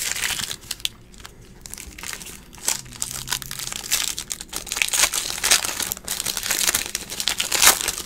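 Foil trading-card pack wrapper crinkling as it is torn open by hand: irregular crackles, sparser for a moment about a second in, with cards handled and slid against one another.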